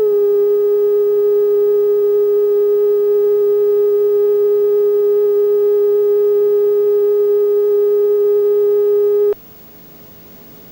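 Videotape line-up tone (bars and tone): a single steady test tone that cuts off suddenly near the end, leaving a faint hum.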